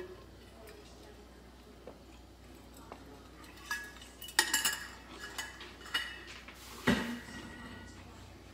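Kitchen dishes and metal utensils clinking and clattering. A run of ringing clinks starts about halfway through, and a louder knock comes near the end.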